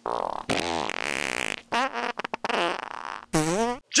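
Simulated fart sound effects: one long one about half a second in, followed by a series of shorter, choppy ones.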